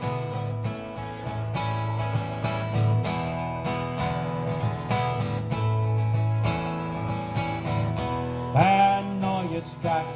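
Acoustic guitar strummed in a steady rhythm, its chords ringing between the strokes, with a brief louder held note near the end.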